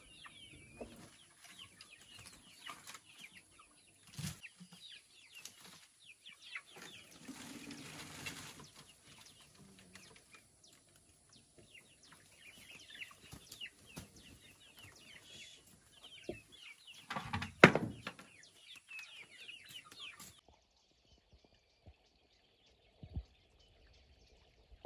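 Chickens clucking and chirping, with a rustle, a few knocks and one loud sharp thump about two-thirds of the way through. Near the end the sound drops to a faint background.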